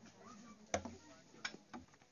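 Three sharp knocks within about a second, the first the loudest, against a quiet background.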